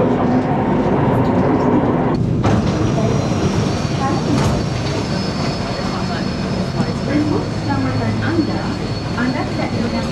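Metro train running, heard from inside a carriage as a steady rumble. About two seconds in it breaks off, giving way to the hubbub of a busy underground station with background voices.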